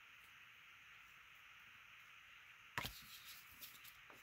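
Near silence with faint steady hiss. About three quarters of the way in comes a short patter of small clicks and rustles: hands picking up a roll of double-sided tape and settling a paper card on the tabletop.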